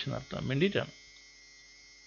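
A man's voice for about the first second, then a pause holding only a faint, steady electrical mains hum.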